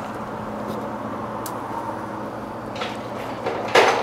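Steady low indoor hum with a few faint clicks, then a sharp noisy burst near the end.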